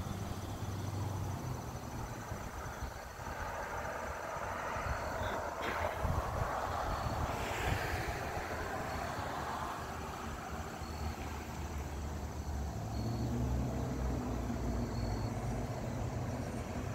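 Outdoor ambience of a passing vehicle: a low steady hum, with a rush that swells in the middle and then fades. Faint short high chirps come about once a second.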